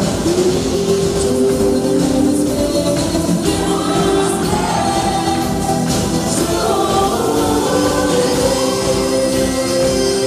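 Live wedding band playing a song, with several voices singing held notes together over the band.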